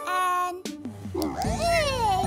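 A cartoon baby character's high, squeaky voice: a short held sound, then a long call that rises and falls in pitch, over background music.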